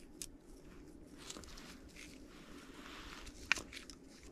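Faint handling sounds as a lower oil control ring is worked onto a piston by gloved hands: low rustling with a few light clicks, the sharpest about three and a half seconds in.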